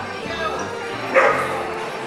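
A dog barks once, loudly and briefly, about a second in, over the voices of a busy hall.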